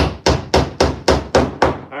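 Claw hammer striking a wooden board in a quick, even run of about four blows a second.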